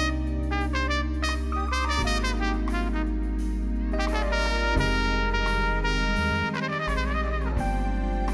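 Live band music led by a trumpet playing a melodic line over keyboard, bass and drums, with a wavering, bending phrase about two-thirds of the way through.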